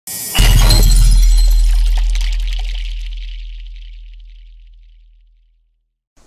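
Intro sound effect: a brief lead-in, then a heavy hit under half a second in, a deep low boom with a bright crash on top. Both die away slowly over about five seconds.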